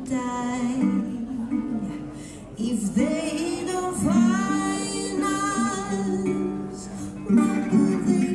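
Live duo music: a resonator guitar played under a woman singing long, held notes.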